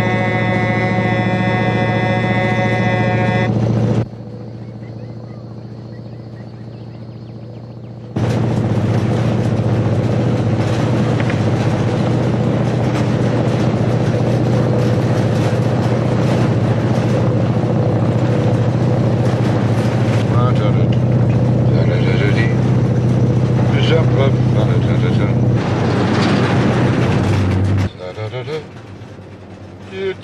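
A road train's horn sounding one long steady blast, then, after a few quieter seconds, the truck's diesel engine and rolling noise running loud and steady for about twenty seconds before dropping away near the end.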